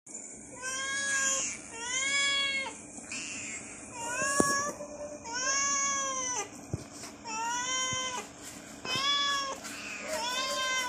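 Young tabby cats meowing repeatedly, about six drawn-out meows that each rise and then fall in pitch, begging for a treat.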